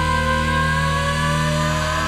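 Hard rock band recording: a single long held note that drifts slightly upward, sustained over a steady low chord with no drums. The full band comes back in just after.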